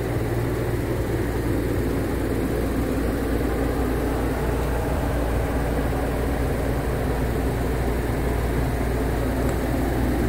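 Ventilation fans running with a steady low drone and a constant hum.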